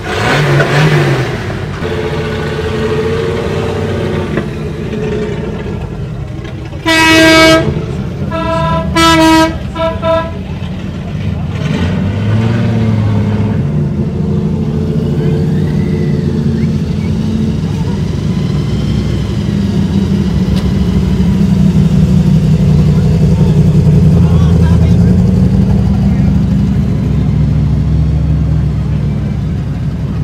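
A vehicle horn sounds twice, a short blast about seven seconds in and a longer, broken one just after. Under it V8 engines of slow-moving cars rumble steadily, building to a deep, loud rumble through the second half as the black Interceptor coupe drives past close by.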